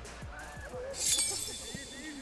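A bright, glassy shimmer sound effect about a second in, ringing briefly over background music.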